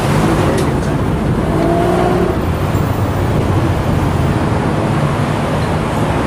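Steady car and traffic noise with a low engine hum.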